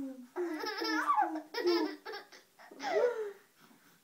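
Baby laughing in a string of short bursts, then one longer rising-and-falling laugh about three seconds in.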